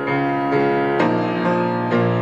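Acoustic piano played solo, sustained chords ringing, with a new chord struck about a second in.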